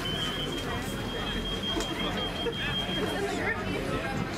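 Crowd babble: many people's voices talking and calling over one another, none distinct, over a low steady rumble. A thin steady high tone runs above them and stops about three seconds in.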